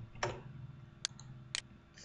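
Computer mouse button clicking: three separate sharp clicks within about a second and a half.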